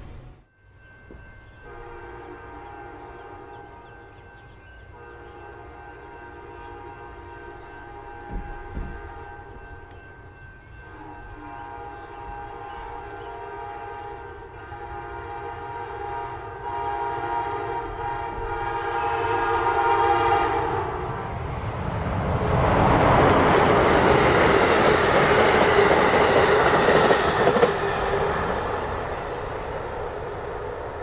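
Amtrak Charger SC-44 locomotive's K5LA air horn sounding long, steady chord blasts for a grade crossing, broken briefly twice. About two-thirds of the way through the horn stops and the loud rumble of the approaching train rises in its place.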